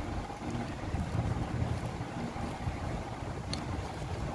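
Scissors cutting through a disposable diaper's padding, with faint rustling and one short sharp snip about three and a half seconds in, over a steady low rumble of wind or handling noise on the microphone.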